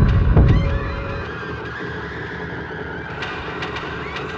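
Horror trailer sound design: two deep, heavy hits right at the start, then a droning bed with wavering high tones that bend in pitch, and a few sharp clicks later on.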